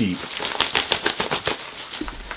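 Clear plastic bag crinkling and crackling in quick irregular bursts as the bagged backpack is turned over in the hands.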